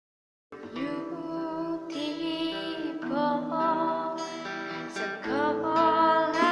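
Acoustic cover band playing: a woman's voice singing over acoustic guitars, starting suddenly about half a second in.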